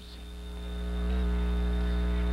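Steady electrical mains hum with a buzz of evenly stacked overtones, growing louder over the first second and then holding steady.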